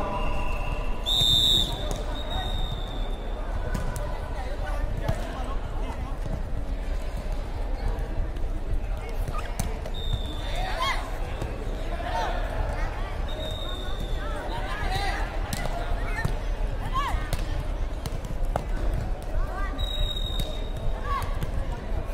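Air volleyball play in a large hall: the soft ball being struck, with a few short high squeaks and players' voices calling out now and then over a steady hall hum.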